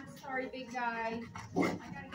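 Dogs in shelter kennels whining and yelping, with a short, louder outburst about one and a half seconds in.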